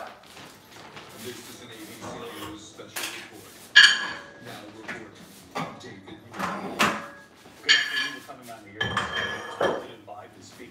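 Small weight plates clanking and clinking as they are swapped, with a ringing clank about four seconds in and several lighter clinks after.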